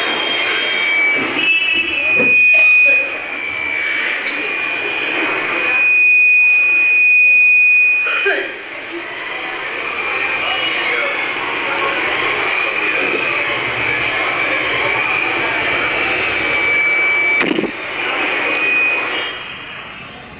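Voices in a crowded room heard through a steady, loud rushing noise. Thin, high, held tones come and go several times, with louder surges about two seconds in and again around six to eight seconds.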